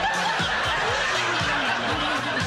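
Studio audience laughing over rock music, with a kick drum beating underneath.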